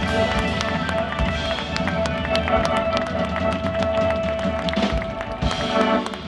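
A live band playing: drum kit strikes over sustained chords, with one long held note in the middle.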